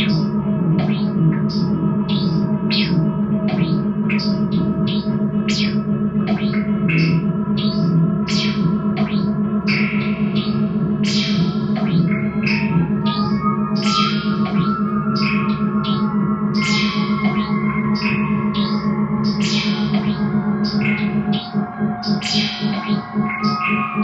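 Electric guitar played through effects such as chorus, echo and distortion, over a sustained low drone and a steady pulse of short, hissy hits, as in a live band rehearsal.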